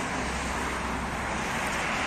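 Steady outdoor city background noise with a low rumble and no distinct events.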